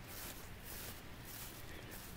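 Faint, steady outdoor background noise with no distinct sounds standing out.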